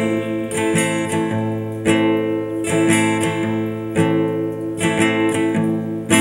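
Acoustic guitar strummed, chord after chord, with the strings ringing between strokes.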